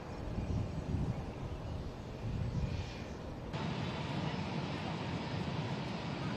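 Low, fluctuating rumble of aircraft engines at an airshow. About three and a half seconds in it cuts abruptly to a steadier, brighter outdoor background with a faint steady tone.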